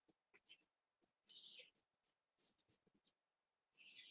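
Chalk scraping on a blackboard: a few short, faint scratching strokes as a box is drawn.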